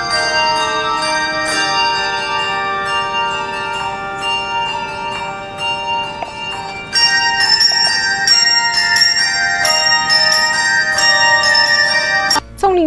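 A handbell choir ringing a piece of music: many tuned handbells struck in chords, their notes ringing on and overlapping. It gets louder from about seven seconds in.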